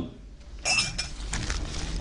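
A light clink of glassware being handled, a little over half a second in, with a low steady hum underneath.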